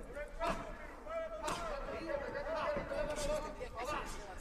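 Faint, distant voices from ringside, with two dull thuds, one about half a second in and one about a second and a half in.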